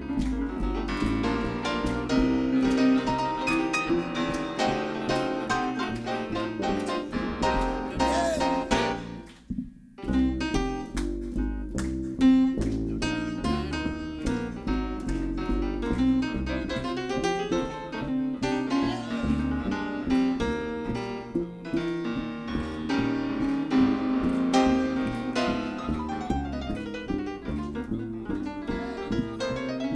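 Jazz piano solo on a Brodmann grand piano, with a double bass playing low notes underneath. The music drops out briefly about ten seconds in.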